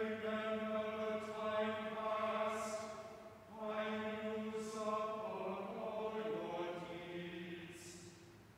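Choir chanting in long phrases held mostly on a single note. There is a short break about three seconds in, and in the second phrase the pitch steps a few times before it ends.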